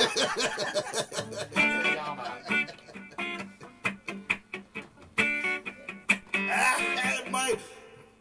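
Acoustic guitar strummed in a quick rhythm, with a man laughing over the playing; the strumming breaks off just before the end.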